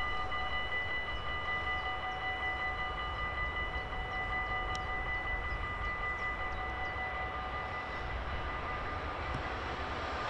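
Electronic warning bell of a Dutch level crossing ringing steadily with the barriers down, signalling an approaching train, over a low rumble.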